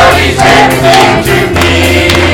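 Church choir singing a gospel song with live band accompaniment, a steady bass note sounding beneath the voices.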